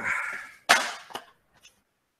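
A sharp knock about two-thirds of a second in, then a fainter one half a second later: a board-game box being handled and set down.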